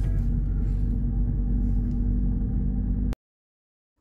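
Steady engine and road rumble inside a slowly moving car, with a steady low hum. It cuts off abruptly to silence about three seconds in.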